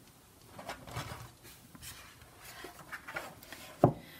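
Oracle card decks being handled and moved on a wooden tabletop: soft rustles and light taps, with one sharper tap near the end.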